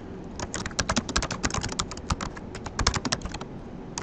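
Computer keyboard typing: a quick run of key clicks as a short sentence is typed, slowing to a few scattered keystrokes near the end.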